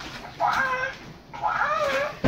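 Hatchimal interactive toy inside its egg making two short electronic creature calls, meow-like and bending in pitch. The second call is longer.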